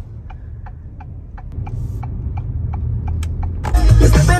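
Car turn-signal indicator ticking evenly, about three clicks a second, heard inside the cabin over a low engine and road rumble. Loud music with heavy bass cuts in just before the end.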